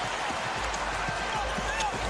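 A basketball being dribbled on a hardwood court, a few faint bounces over steady arena crowd noise.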